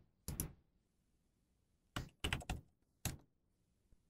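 Computer keyboard being tapped: a handful of short, separate clicks in small clusters, with dead silence between them.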